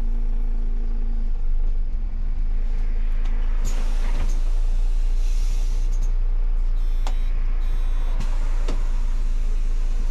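MAN Lion's City city bus idling, heard from inside the driver's cab as a steady low engine hum, with a few clicks and knocks. Two short high electronic beeps come about seven seconds in.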